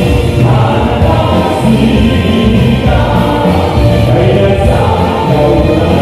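Live band playing kuratsa folk dance music, loud and continuous with a strong bass line.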